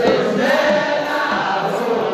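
Eritrean Orthodox liturgical chant sung in chorus by many voices, with kebero drums in the accompaniment; the chant swells right at the start.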